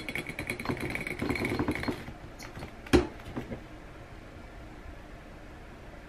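A marker rattling and scraping rapidly against the neck of a glass bottle filled with water for about two seconds, then a single sharp knock about three seconds in.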